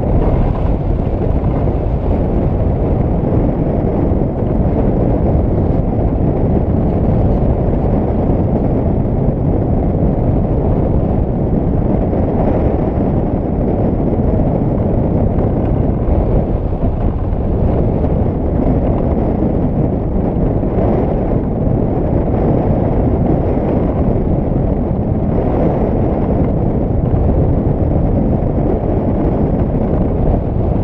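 Steady, heavy wind rush buffeting the microphone of a camera mounted on a hang glider in gliding flight.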